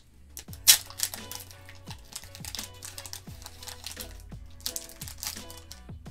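Foil booster pack wrapper torn open and crinkled by hand, with a sharp rip about a second in and more crackling near the end, over steady background music.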